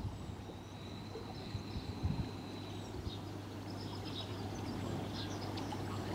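Quiet outdoor ambience with faint birdsong: one thin, high, long-held whistle in the first half, then a few short chirps, over a low steady hum.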